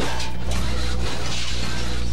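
A crash sound effect: a sudden smash, then about two seconds of crunching noise over a low rumble, stopping as the narration returns.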